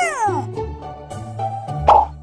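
Children's cartoon background music with a bass line. It opens with the end of a high sliding tone that falls away, and just before the end a short bright magic sparkle sound effect plays.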